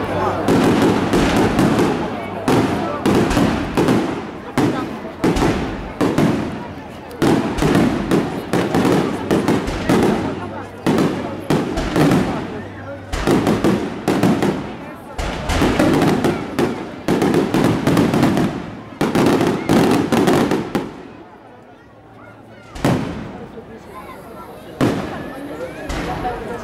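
Aerial firework shells bursting in rapid succession, a dense string of sharp bangs. The barrage thins out about 21 seconds in, leaving a short lull, then a few more single bursts near the end.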